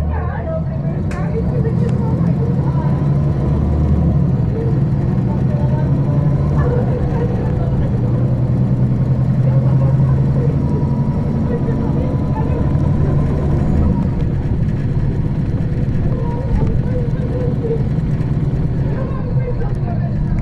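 Interior drone of a 2009 MAN 18.310 HOCL-NL city bus's compressed-natural-gas engine, running while the bus is under way, heard from inside the passenger cabin. The steady low engine note shifts in pitch, a little louder through the middle, with a sharp click about a second in.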